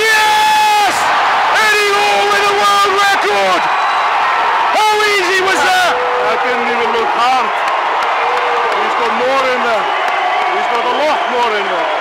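Excited men yelling and cheering in long, high held shouts, several voices at once over crowd noise, as a 463 kg record deadlift goes up and is locked out.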